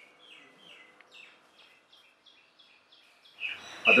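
A small bird chirping in a quick run of short, falling chirps, several a second, over faint background noise. A man starts speaking near the end.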